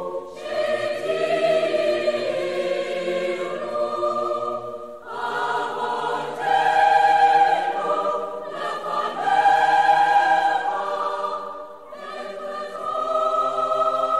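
A choir singing sustained chords in long held phrases, swelling loudest in the middle phrase.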